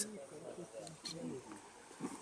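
Faint voices of people talking in the background, in short phrases that fade out after about a second and a half.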